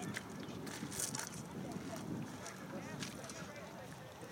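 Wind rumbling on the microphone, with faint distant shouts and calls from players and spectators across an open field.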